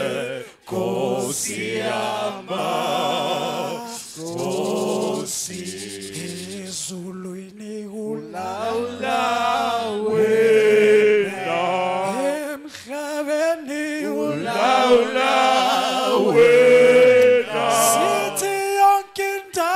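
A male a cappella group singing through microphones, several voices layered in harmony with no instruments. There is a short break between phrases just after the start.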